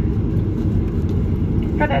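Steady low rumble inside the cabin of a Boeing 737-800 taxiing, from its idling CFM56-7B engines and the aircraft rolling along the taxiway.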